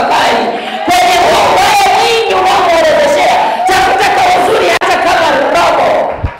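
A woman's voice shouting in a high, strained, drawn-out cry into a microphone, loud and almost unbroken, with a crowd of voices behind it.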